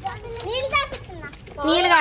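A child's voice: two short utterances, the second louder, near the end.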